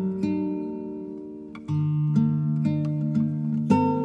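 Background music on a plucked acoustic guitar. A chord rings and fades, then a louder chord comes in just under two seconds in, followed by further picked notes.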